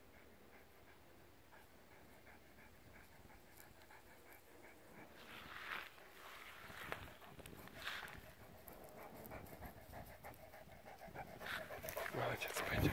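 Newfoundland dog panting in a fast, steady rhythm, faint at first and growing louder as it comes close, with a few brief swishes about halfway through.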